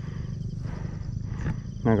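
Low, steady rumble of wind and movement on a body-worn action-camera microphone during a trail run, with no clear strikes or pitched sound; a spoken word starts right at the end.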